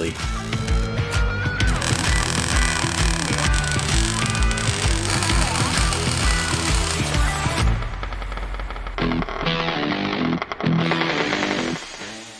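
Background music with a steady beat, about two beats a second, over the crackle of a Cigweld Easyweld 160 MIG welder laying tack welds on steel chassis bracing. The beat drops out about eight seconds in.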